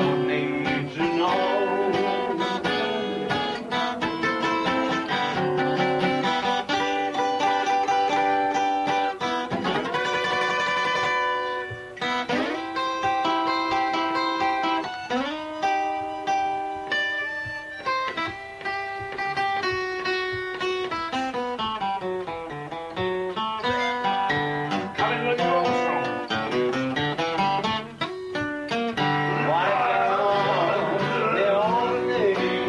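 Acoustic guitar played solo in an instrumental break: picked single-note melody runs and chords, with notes sliding between pitches. A man's singing voice comes back in near the end.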